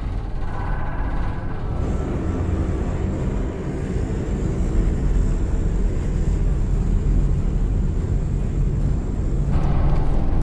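Large aircraft's engines droning in flight, with a thin high whine from about two seconds in until near the end, blended with a low film score.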